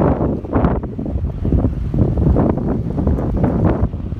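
Loud, gusty wind buffeting a phone's microphone.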